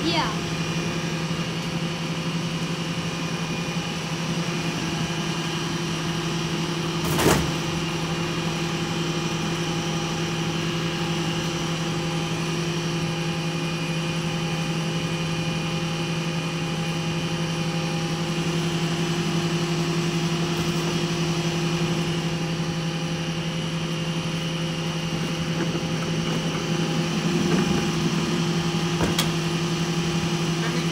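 Rear-loader garbage truck running while stopped, giving a steady hum. A single sharp bang comes about seven seconds in, and a lighter knock near the end.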